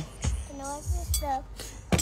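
Untranscribed speech from a fairly high-pitched voice, over a low steady rumble.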